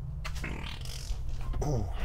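Rustling and shuffling as a man climbs on his knees into the cargo area of a van, over a steady low hum, ending with a short effortful "ooh".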